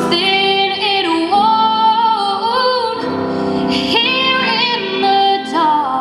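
A woman singing solo, holding long notes with vibrato, the melody rising and falling.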